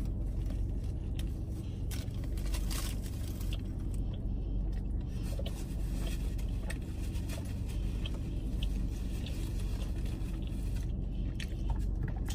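Close-up biting and chewing of a Taco Bell chalupa and taco, with scattered crunches and paper-wrapper rustles, over a steady low hum.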